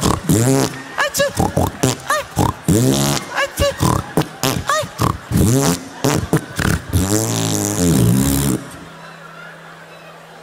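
A man's exaggerated impression of a laugh into a microphone: a rapid string of rising-and-falling vocal bursts mixed with barnyard-like noises. It stops abruptly about eight and a half seconds in.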